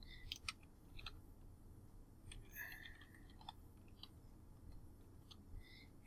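Faint, scattered keystrokes on a computer keyboard as a password is typed, a few irregular clicks spread across otherwise quiet room tone.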